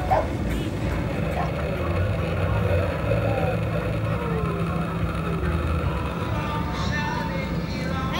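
A steady low motor drone with a short laugh at the start and faint voices over it.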